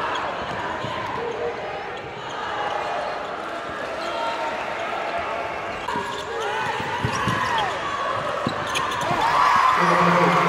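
Live basketball game sound in a gym: a ball being dribbled on the hardwood court over a steady hubbub of players' and spectators' voices, with short sneaker squeaks about six and nine seconds in.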